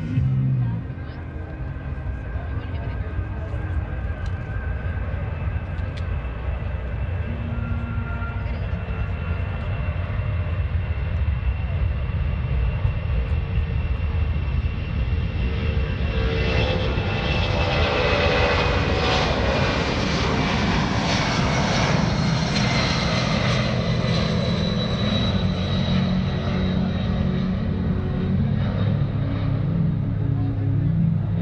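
A C-17 Globemaster III's four turbofan engines at takeoff power as it rolls down the runway and climbs out. The jet noise swells as the aircraft passes close by, about halfway through, with a whine falling in pitch as it goes past, then carries on as it climbs away.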